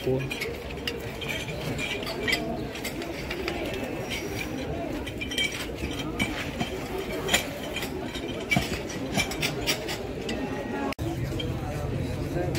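Indistinct chatter of a crowd of men talking in the background, with a few short sharp clicks, and a brief dropout near the end.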